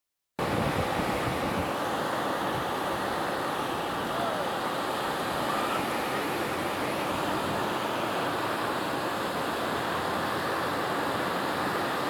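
Steady rush of surf breaking along the beach, mixed with wind on the microphone.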